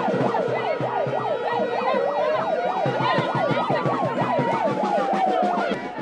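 Two emergency sirens sounding together over crowd noise. One is a fast yelp warbling up and down several times a second. The other is a slow wail that falls, rises about two seconds in and falls again. Both cut off just before the end.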